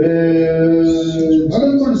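A man's voice held on long, steady notes in a chant-like call, louder than the talk around it, stepping to a new pitch about one and a half seconds in.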